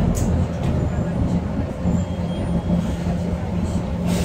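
Interior sound of a Volvo 7000A city bus: its Volvo D7C275 six-cylinder diesel and ZF 5HP592 automatic gearbox running with a steady low drone and a held tone. A brief high hiss comes just after the start.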